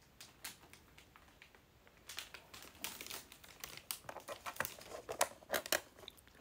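Plastic packaging crinkling and crackling as it is handled: a few faint clicks, then a dense run of crackles from about two seconds in.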